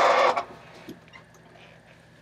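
A short breathy hiss blown close into a vocal microphone, cutting off about half a second in, then a quiet pause with faint room noise.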